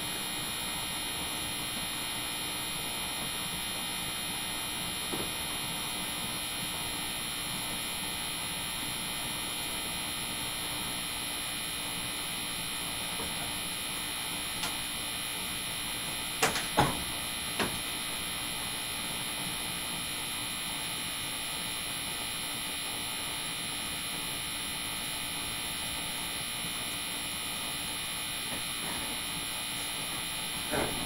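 Steady room tone of a quiet room: an even hiss with a faint low hum, broken a little past halfway by three short knocks in quick succession.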